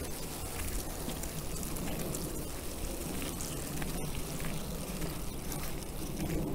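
Footsteps on a dirt path, with a steady rustle and a low rumble of wind and handling on a phone's microphone.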